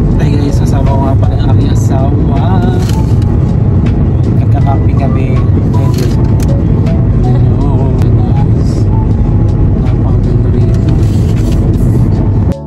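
Steady low rumble of road and engine noise inside a moving car's cabin, with people talking over it and occasional clicks of the phone being handled.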